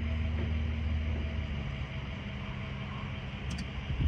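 Steady low hum with a couple of steady low tones that drop out partway through, and a faint click near the end, while a Tesla V2 Supercharger connects to the car and charging has not yet started.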